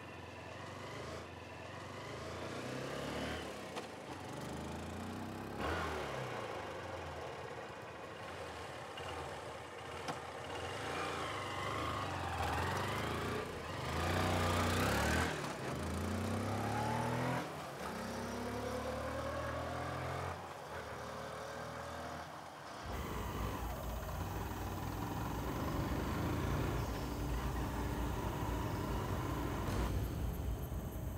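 Motorcycle engine revving as it is ridden hard, its pitch rising and falling again and again, loudest about halfway through. About three-quarters of the way in it gives way abruptly to a steady low rumble.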